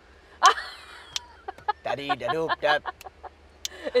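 Women laughing: a loud, high shriek of laughter about half a second in, then a run of short, choppy laughs.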